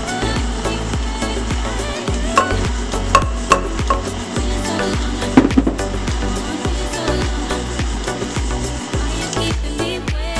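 Background music with a steady beat, over a KitchenAid Ultra Power stand mixer running, its flat beater churning a damp, crumbly bath bomb mixture of salts and powder in a steel bowl. A few short clicks come between about two and four seconds in.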